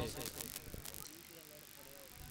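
A quiet gap in the commentary: faint background of the ground with faint distant voices and a couple of soft clicks about a second in, then a faint hush.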